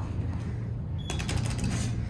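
Traction elevator car with a steady low hum, and about a second in a brief rapid rattle of mechanical clicks lasting under a second.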